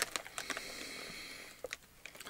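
Plastic snack bag crinkling as it is pulled open, with scattered crackles over a fading rustle and one sharper crack near the end.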